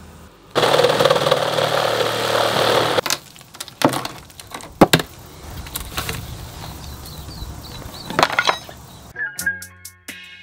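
A couple of seconds of loud rushing noise, then scattered sharp knocks and scrapes of hand work on timber framing under a house floor. Music comes in near the end.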